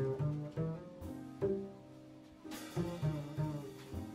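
Upright double bass played pizzicato in a jazz trio: a walking line of plucked low notes, each starting sharply and fading, with light accompaniment behind it.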